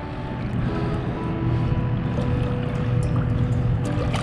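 Water washing against the side of a boat in a steady, even wash as a large snook is held by the lip at the surface to revive it before release. Faint sustained tones of background music run underneath.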